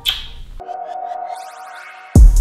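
Faint background music for the first half second, then a held electronic tone, like a sonar ping, with quick glittering upward sweeps over it in the second half: a transition sound effect for the end screen.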